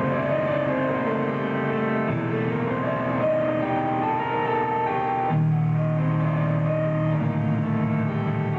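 Live metal band playing a slow passage: guitars hold low sustained chords that change about two seconds in and again past five seconds, with a higher melody line moving above them.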